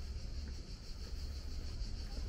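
Outdoor walking ambience: an uneven low rumble of wind on the microphone under a steady high hiss, with a faint footstep or two on stone paving.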